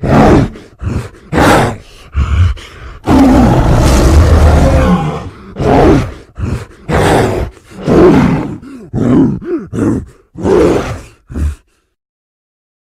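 Giant-ape monster vocal sound effects mixed from film creature sounds such as King Kong roars: a string of short roars and grunts, with one long roar from about three to five seconds in.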